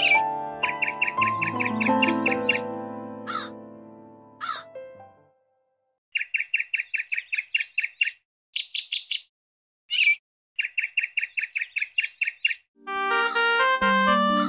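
Bird chirping in quick trains of short, even notes, about ten a second, with a few sharp downward calls and dead silence between the trains. Before it, sustained keyboard music fades out over the first few seconds, and keyboard music starts again near the end.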